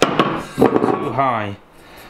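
A cut-off aluminium keg top is handled and set down on a wooden workbench. There is a sharp knock at the start, then scraping and rubbing of metal on wood for about a second. A short spoken word comes in past the middle.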